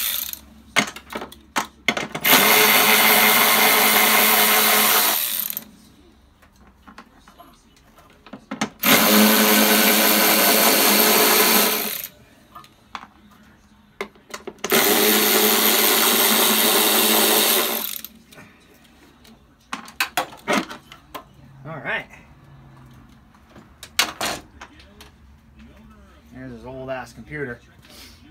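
A handheld power tool runs in three bursts of about three seconds each, driving the mounting bolts of the car's engine computer. Short clicks and knocks of handling come between the runs.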